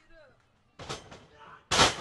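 A heavyweight wrestler's body splash landing on his opponent and the ring canvas: one loud, sharp slam of the ring near the end, after a quieter rough noise as he leaps.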